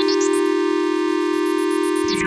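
Ambient synthesizer music: a steady held low drone under a sustained chord of high tones. A run of quick rising notes climbs to a very high pitch in the first half second.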